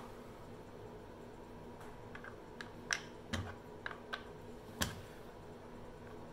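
Faint, scattered light clicks and taps, about eight in all and starting about two seconds in, from an Allen key and the plastic body of a cordless reciprocating saw being handled while its shoe is tightened and the key is stowed.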